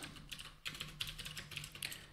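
Computer keyboard typing: a run of faint, quick, irregular key clicks as code is entered.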